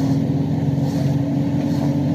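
Steady engine and road noise inside the cabin of a vehicle moving at road speed, with a continuous low hum.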